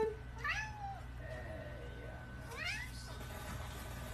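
Domestic cat giving two short meows that rise in pitch, about two seconds apart.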